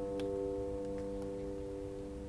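Celtic harp notes left ringing after a chord was plucked just before, slowly fading away, with a few faint ticks.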